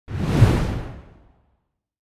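Logo-reveal whoosh sound effect with a deep low boom under it. It swells in sharply and fades away over about a second.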